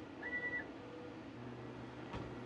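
Short electronic beep from a Thunder Laser Bolt CO2 laser cutter's control panel, one steady high tone lasting under half a second. About one and a half seconds in, a low steady hum comes in.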